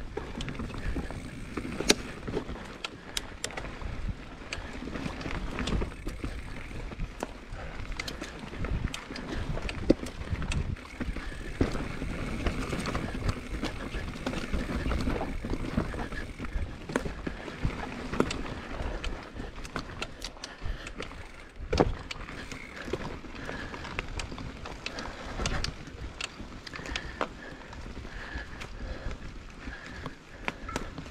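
Mountain bike riding fast down a dry, rocky dirt trail: tyres rolling over dirt and rocks, frequent clicks and rattles from the bike over the bumps, with several louder knocks, over a steady rumble of wind on the microphone.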